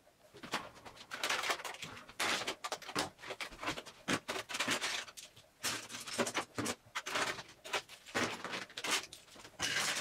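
Small makeup items and plastic containers being handled and set down while a vanity drawer is sorted, in irregular bursts of rustling and clicking with short pauses between.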